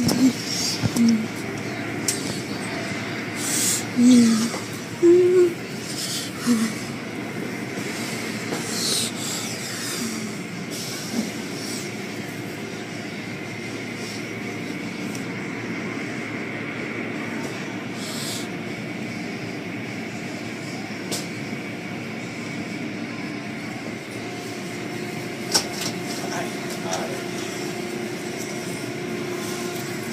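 Steady machinery-like background noise with a faint, constant whine. Brief snatches of voices and a few sharp clicks come in the first several seconds.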